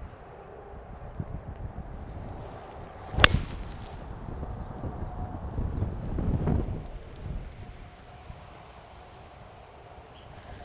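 A single sharp crack as a driver strikes a teed golf ball, about three seconds in, over low wind rumble on the microphone.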